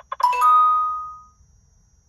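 Kingbolen K10 diagnostic tablet: the last tick of its rolling-digit VIN scan, then a bright two-note chime that rings for about a second as the VIN is decoded and the vehicle identified.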